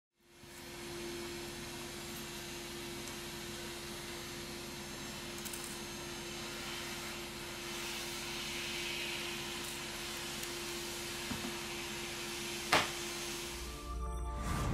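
Steady whirring of a small motor-driven fan with a constant low hum, and one sharp click about a second before the end.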